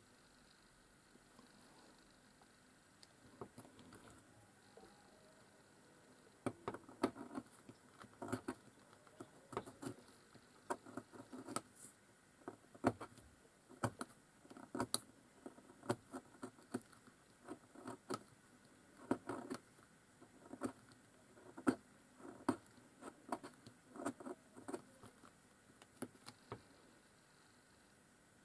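Scalpel blade shaving a twig to cut a dip-pen nib: faint, irregular small scrapes and clicks, sparse at first and then coming thick and fast from about six seconds in.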